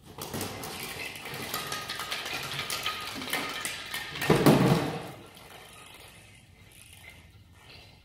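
Christmas ornament balls dropping out of a clear plastic tube onto a hard glossy tile floor, a rapid patter of clicks and clacks as they hit, bounce and roll. A louder thump about four seconds in, then a few faint ticks as the balls settle.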